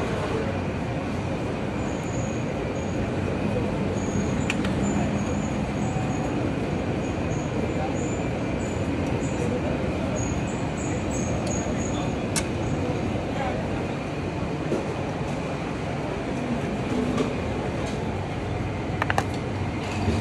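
Steady dining-hall background noise: a constant rumbling hum with a murmur of voices, broken by a few sharp clinks of metal serving utensils.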